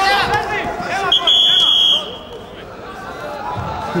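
Shouting voices as the wrestlers grapple, then a single loud, steady, high whistle blast lasting under a second. It is a referee's whistle stopping the action after the wrestlers go out of bounds.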